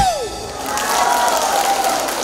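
Audience applauding as the dance music ends, the music's last note sliding down in pitch at the very start; the clapping swells from about half a second in.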